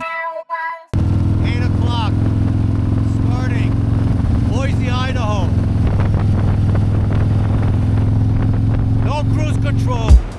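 Harley-Davidson Low Rider ST's Milwaukee-Eight 117 V-twin running steadily at a highway cruise of about 48 mph, heard from on the bike. It starts about a second in, after a short electronic logo sting. A man's voice rises and falls over it a few times without clear words.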